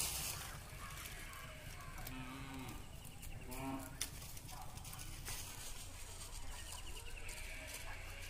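Goats foraging in dry leaf litter, with rustling and crackling, and a few short farm-animal calls: one about two seconds in, one around three and a half seconds, and a higher one near the end. A sharp click comes about halfway through.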